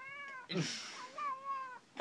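Cat meowing twice, two short calls that each rise and fall in pitch, the second starting about a second in and lasting a little longer.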